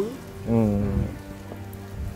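A man's voice makes a short 'mm' sound about half a second in, followed by a faint steady low hum.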